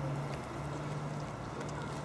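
Steady low hum of an idling engine, even and unchanging.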